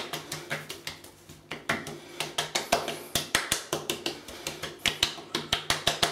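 Hands repeatedly patting and slapping aftershave splash onto freshly shaved cheeks: quick runs of sharp skin slaps, several a second, broken by short pauses.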